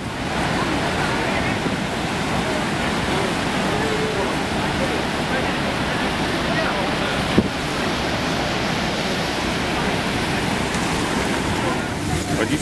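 Steady rushing of a massive waterfall close at hand, water pounding into the river below and throwing up spray, with wind on the microphone. A single short knock about seven seconds in.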